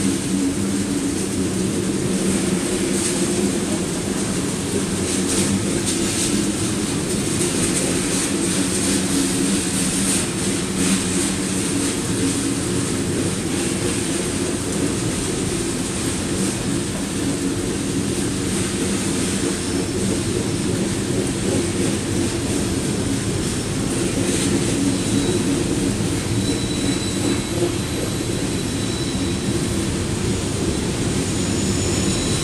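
Covered hopper cars of a sand train rolling past: a steady rumble of steel wheels on rail.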